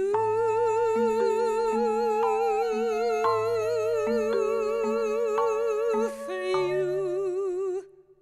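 Closing bars of an avant-garde trio for voice, flute and mallet percussion: a woman's voice holds one long note with wide vibrato while a second line slowly falls in pitch and mallet-struck keyboard notes sound about every 0.7 seconds. All of it stops together just before the end.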